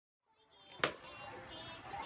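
Quiet room sound with faint sounds of small children, fading in from silence, with one sharp click a little under a second in.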